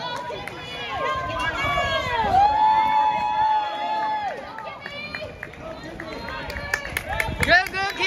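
Poolside crowd cheering on swimmers in a race: many overlapping voices shouting, with long drawn-out yells, growing louder near the end.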